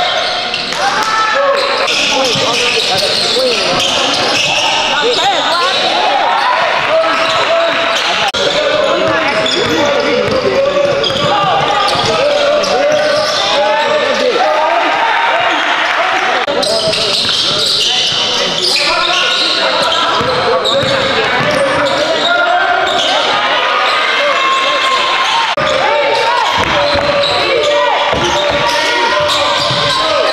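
Basketball game sound in a gym: overlapping, unintelligible voices of players and spectators, with the ball bouncing on the hardwood court.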